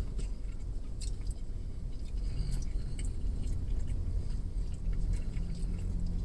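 A man chewing a mouthful of refried beans, with faint mouth noises and a few light clicks, over a steady low rumble inside a car.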